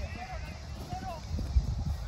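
Faint, distant voices calling out across a soccer field, over a low steady rumble.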